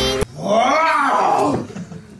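A young man's long wordless howl, a playful roar-like yell that rises and then falls in pitch, coming in just after background music cuts off.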